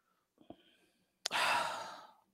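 A man's loud breath or sigh into a close microphone, starting sharply about a second and a quarter in and fading away, preceded by a faint mouth click.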